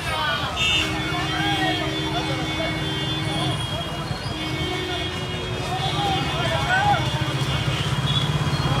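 Road traffic around a slow-moving convoy: vehicle engines running under wavering voices from the crowd. Two long, steady held tones sound over it, the first from about one to three and a half seconds in, the second from about four to seven seconds in.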